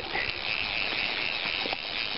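Steady rush of flowing river water, an even hiss with no breaks.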